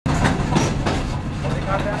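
Loud, steady workshop machine noise with a low hum and a few knocks early on, and a brief voice near the end.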